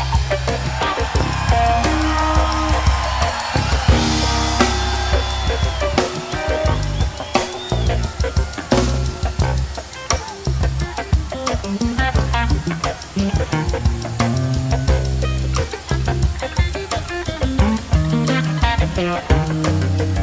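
Live rock band playing an instrumental funk jam: drum kit keeping a steady beat under a bass line, with electric guitar lead lines bending in pitch. No vocals.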